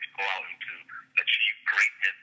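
Speech only: a man talking over a telephone line, the voice thin and narrow.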